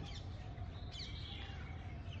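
Birds chirping faintly in the background, with a brief call about a second in, over a low steady outdoor rumble.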